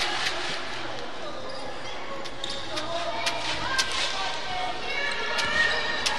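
A basketball bouncing on a hardwood gym floor, at irregular intervals, with the echo of a large hall. Voices sound faintly in the background.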